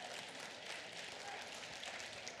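Faint, steady room tone with a low hiss in a large hall, with no distinct sound events.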